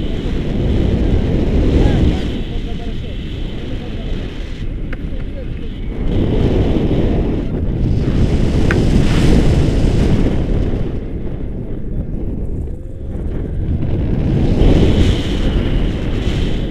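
Airflow buffeting a camera microphone during paraglider flight: a heavy low rumble that swells louder and eases back every few seconds.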